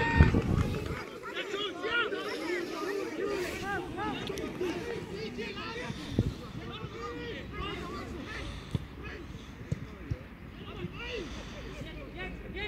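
Indistinct shouts and calls of players and spectators around an outdoor amateur football pitch, short scattered voices throughout. A loud sharp thump comes right at the start, with a few smaller knocks later, the clearest about six seconds in.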